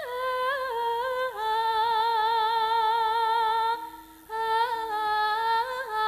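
A woman singing into a microphone without accompaniment, in Javanese sindhen style: long held notes that step downward in pitch, with small ornamental turns between them. There is a short breath break about four seconds in.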